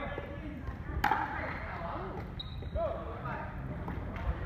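A single sharp pock of a plastic pickleball about a second in, ringing briefly in the hall, followed by a couple of short squeaks of court shoes on the hardwood floor.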